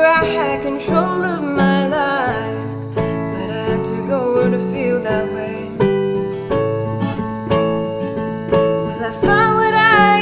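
A woman's voice holding out a sung note over acoustic guitar and digital piano, then an instrumental passage of the two instruments with no voice. Singing returns near the end.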